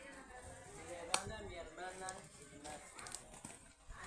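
Faint background voices of people talking at a distance, with one sharp click about a second in.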